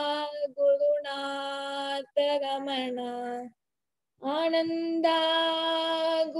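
A woman's solo voice singing a devotional invocation to the line of gurus in long held notes. There is a pause for breath of under a second about halfway through.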